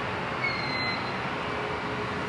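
Steady electrical static and hum from the lobby's neon tube lights, with a faint high electronic beep about half a second in.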